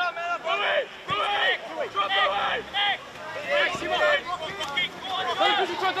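Men's voices calling out in short phrases on the football pitch, one after another throughout.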